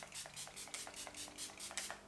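A pump-mist bottle of Rare Beauty setting spray being pumped rapidly at the face, a quick run of about a dozen short hissing spritzes, five or six a second.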